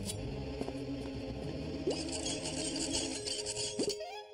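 Cartoon soundtrack of sound effects: scraping, rasping noise over a low rumble, with a hiss joining about halfway through and a couple of short sliding tones.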